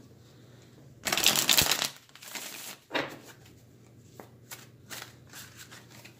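A deck of tarot cards being shuffled in the hands: a dense burst about a second in that lasts about a second, then quieter handling of the cards with a sharp click and a few light taps.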